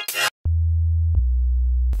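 A pulsing electronic riddim loop cuts off, then a pure low sine-wave synth bass note sounds, stepping down to a lower note about a second in.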